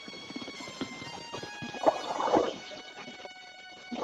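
Squirts of milk from hand-milking a cow into a plastic mug, a few uneven strokes, the strongest about two seconds in, over background music of held tones.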